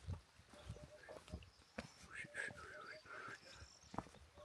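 Faint footsteps squelching and knocking on a muddy, stony dirt track, with a faint wavering animal call in the middle.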